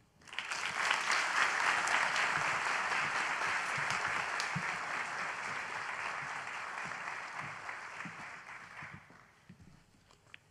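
An audience applauding, building quickly at the start, holding steady, then dying away about nine seconds in.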